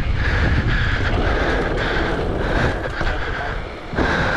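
Mountain bike rolling fast over a pump track: tyre noise and rumbling wind on the microphone, with a buzz that cuts in and out about twice a second. The sound drops briefly just before the end.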